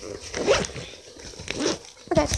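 A zipper being pulled in two short strokes, on the zippered case that holds the trading cards.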